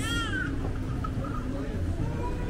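A short, high-pitched cry in the first half-second, rising and then falling, heard over the steady murmur of a busy market street.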